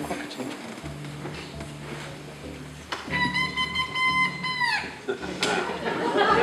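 A small band's instruments sounding single held notes between songs, as in tuning up: a low steady note first, then about three seconds in a high clear note held for under two seconds that sags in pitch as it stops.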